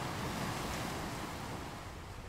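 Ocean surf breaking and washing over a rocky shore; the wash swells about half a second in and eases off toward the end.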